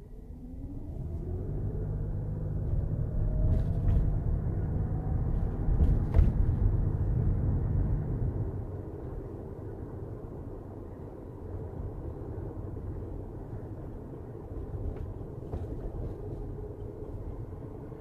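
A car accelerating away from a standstill, heard from inside the cabin. The engine rises in pitch over the first few seconds under a loud low road rumble, with a sharp knock about six seconds in. Then it settles to a steadier, quieter cruise.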